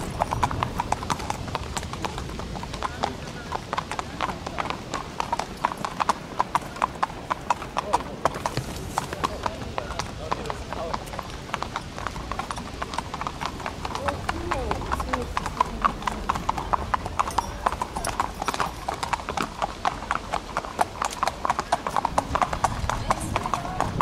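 Hooves of Arabian racehorses clip-clopping on a paved walkway as the horses are walked, a steady, overlapping run of hoofbeats.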